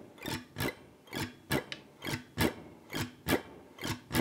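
Archtop jazz guitar strummed with a pick in an even vintage-jazz comping rhythm: short, clipped chord strokes, about two a second.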